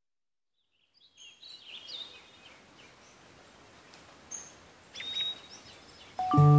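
Faint birdsong: a few short chirps over a quiet steady outdoor background, after about a second of silence.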